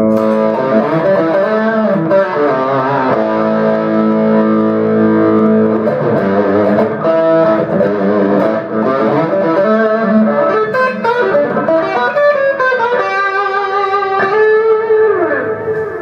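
Cort semi-acoustic electric guitar played through SortinoGP effect pedals with a full-bodied, driven tone: sustained lead notes and melodic phrases, with a note bent down in pitch near the end.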